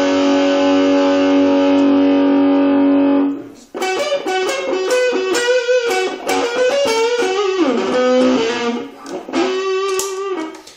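Semi-hollow electric guitar with humbucking pickups, played through a small Marshall Reverb 12 transistor combo amp. A chord rings out for about three seconds and stops, then a run of single-note lines is picked, with a slide down in pitch near the end.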